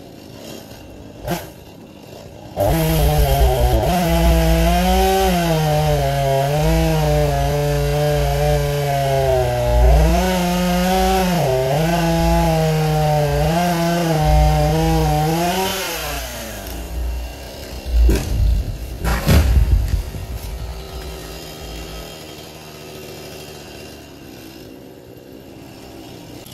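Gas chainsaw cutting through a pine trunk: about two and a half seconds in it revs up and runs under load for some thirteen seconds, its pitch dipping a few times as it bogs in the cut, then winds down. A couple of seconds later come several loud cracks and thuds as the tree comes down, followed by the saw idling faintly.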